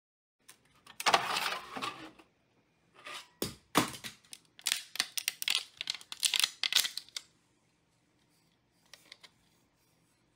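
3D-printed PLA support being pried and snapped off a printed part: bursts of sharp plastic cracking and crackling, in three clusters over several seconds, then a few faint clicks near the end.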